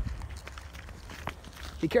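Footsteps moving off a trail into dry undergrowth: a few faint, scattered steps through leaf litter and brush.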